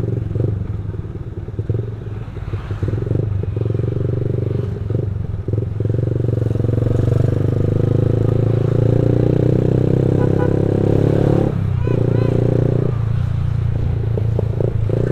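Small motor scooter's single-cylinder engine running while riding through traffic; its note climbs steadily in the second half as it speeds up, then drops away a couple of seconds before the end.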